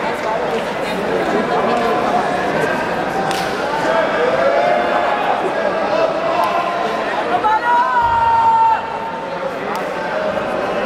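Indistinct voices of spectators and coaches calling out and chattering in a sports hall during a jiu-jitsu match. Near the end a steady held tone lasts about a second and is the loudest sound.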